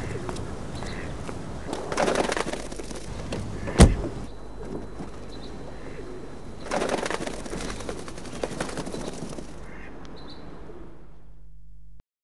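Outdoor ambience with birds calling, broken by one sharp thump about four seconds in and two spells of rustling noise, fading out at the end.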